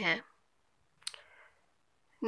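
A short click about a second in, with a brief softer tail.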